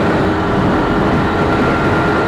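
Motorcycle engine running at a steady cruise, its note holding level, over road and wind noise.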